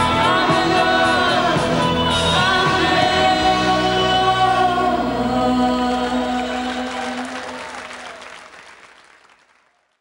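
A 1980s pop song ending: singing with held notes over the band, then the whole track fades out to silence over the last few seconds.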